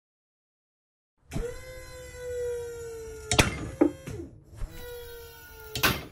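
A pull-test rig loads a 5 mm Dyneema cord soft anchor toward breaking. A steady machine whine slowly drops in pitch. Sharp cracks come from the loaded cord and hardware, the loudest about a third of the way in and another just before the end.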